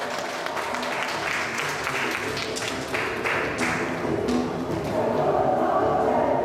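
Audience applause over background music; the clapping is densest in the middle and thins out near the end.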